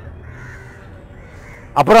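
Faint bird calls in the background during a pause in a man's speech; his voice starts again near the end.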